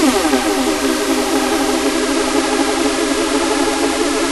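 Sylenth1 software synthesizer playing a sustained chord at a steady pitch, without pitch-bend automation, so it does not rise.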